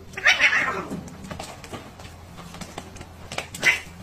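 Domestic cat giving harsh, angry yowls at close quarters: a loud falling cry just after the start and a shorter one near the end, with small knocks of scuffling between.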